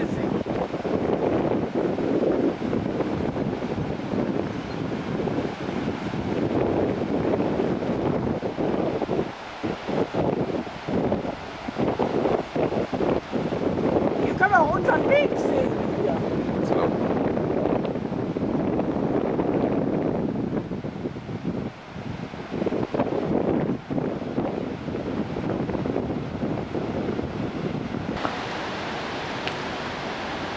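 Wind buffeting the camcorder microphone: a fluctuating, rumbling rush with sudden brief drops. Near the end it gives way to a steadier, hissier, even rush.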